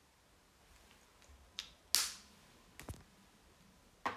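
A few short, sharp clicks close to the microphone: one about a second and a half in, a louder one just before two seconds in, and a quick double click near three seconds in.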